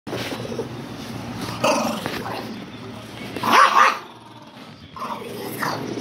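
A dog growling and barking in several short outbursts, the loudest about halfway through.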